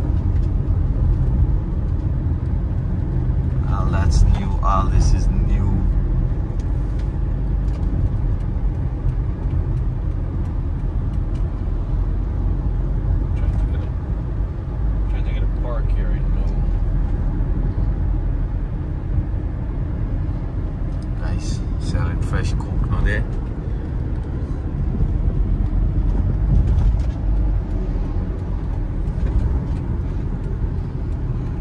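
Steady road and engine rumble heard from inside a moving car's cabin while it cruises along a highway.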